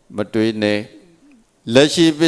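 A Buddhist monk's voice speaking into a handheld microphone: a short phrase, a pause of under a second, then speech again near the end.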